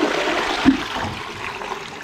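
Toilet flushing: a rush of water from the cistern through the flush pipe into a newly fitted pan, easing off toward the end, with one short knock about two-thirds of a second in. It is a test flush to check the new flexi pan connector and flush pipe joint for leaks.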